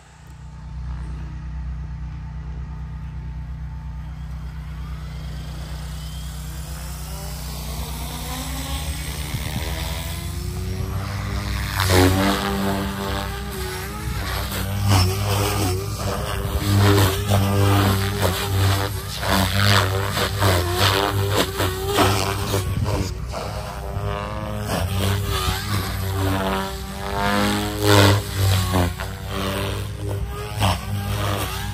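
Electric RC helicopter (Raw 420 Competition with an Xnova 3215-945 motor) spooling up, its motor and rotor whine rising in pitch over the first ten seconds. From about twelve seconds in, the rotor noise is loud and keeps surging and dropping as the helicopter is flown hard.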